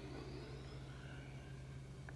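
Faint room tone: a steady low electrical hum under a soft hiss.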